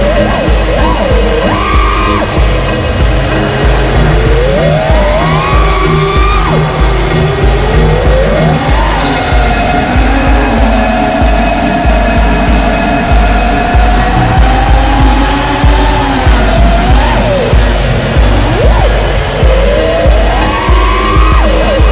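Background music with a steady beat, mixed with the whine of an FPV quadcopter's Emax Eco 2306 brushless motors gliding up and down in pitch with the throttle and holding level for several seconds in the middle.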